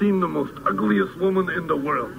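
Spoken dialogue sample: a man's voice talking, thin-sounding with no highs, as from an old film or broadcast recording.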